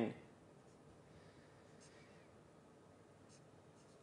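Faint writing on a lecture board, a few short scratchy strokes in an otherwise quiet room.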